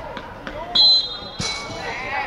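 A referee's whistle blown once in a short, steady, high blast about three-quarters of a second in, signalling a stoppage in play, ending in a brief rush of breath noise and a knock. Faint shouting voices from the touchline around it.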